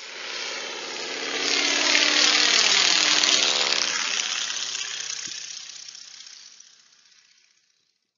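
Propeller airplane flying past: the engine grows louder, drops in pitch as it passes about halfway through, then fades away.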